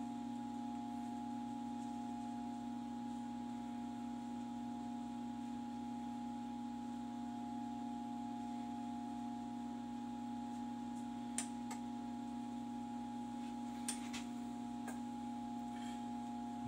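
Steady mechanical hum of room equipment, low and even with a few higher steady tones. A few faint light clicks come about 11 and 14 seconds in.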